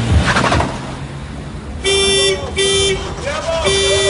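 Car horn honked three times in quick succession, a short honk, a shorter one, then a longer one near the end, with a voice between the honks.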